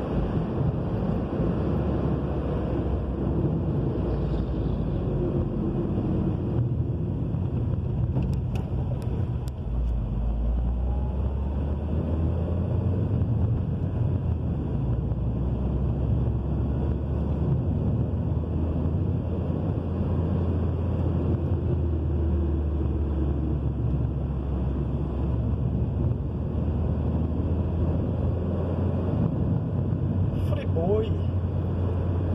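Steady road and engine noise of a moving car, heard from inside the cabin: a continuous low rumble of tyres on asphalt with the engine droning underneath.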